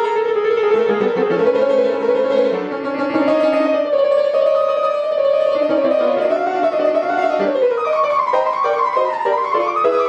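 Music from a Halle & Voigt baby grand piano playing itself under its player system, with a recorded accompaniment; a sustained melody line slides and wavers in pitch over the piano notes, rising higher in the last few seconds.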